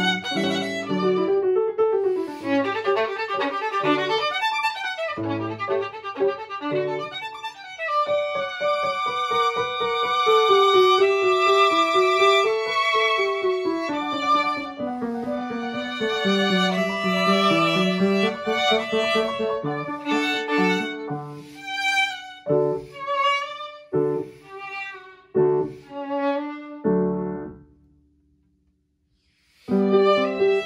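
Violin and piano playing a classical violin sonata. The violin holds long singing notes over the piano, then plays a run of short, separated notes, and the music stops just before the end.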